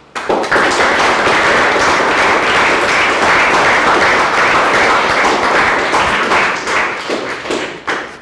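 Audience applauding a finished lecture: dense clapping that starts all at once, holds steady, then thins to a few scattered claps near the end.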